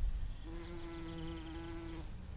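A bumblebee buzzing in flight close by, starting about half a second in and then holding a steady pitch. A low rumble runs underneath.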